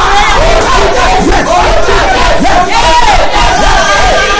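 Loud collective prayer: many voices praying aloud at once and overlapping, with a man shouting "my dear" over and over.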